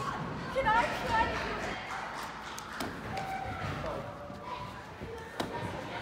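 Indistinct voices echoing in a large gymnastics gym, with a couple of sharp thuds on the mats, the louder one near the end.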